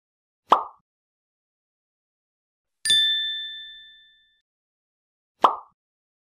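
Logo-animation sound effects: a short pop about half a second in, a bright ding near the middle that rings and fades over about a second and a half, and a second short pop near the end, with silence between.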